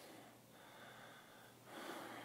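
Near silence: room tone, with a soft breath near the end.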